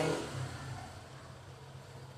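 A low, steady engine hum that slowly fades.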